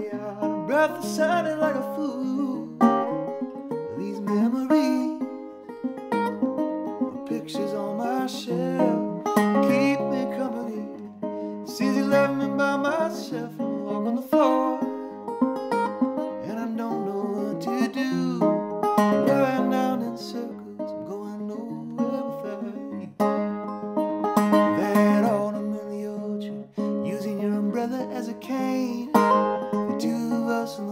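Wood-bodied resonator guitar played as a song accompaniment, with a repeating low bass note under the chords, and a man singing over it.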